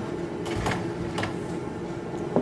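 A steady droning hum, with three short sharp clicks in the first half.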